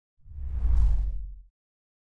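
A deep whoosh sound effect that swells and fades over about a second, part of an animated logo sting.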